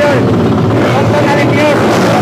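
Several dirt-bike engines running and revving together at a start line, their pitches rising and falling over one another, mixed with crowd voices.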